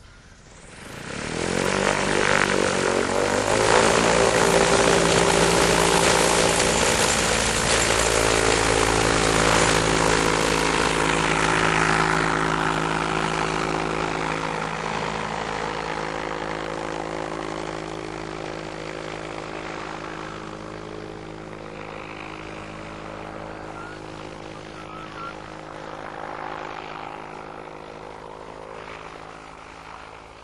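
Electric microlight trike's motor and propeller spinning up to full power about a second in and running loud and steady through the take-off run, then fading slowly as the trike climbs away.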